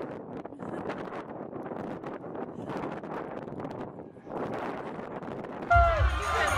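Strong wind blowing on the microphone in gusts, with a brief lull about four seconds in. Near the end it cuts off suddenly into loud music.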